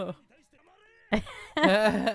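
A high-pitched voice, faint for the first second, then loud from about a second in, with sliding, whiny pitch.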